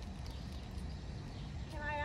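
A pause in an outdoor group conversation: a steady low background rumble, then a person's voice starts near the end.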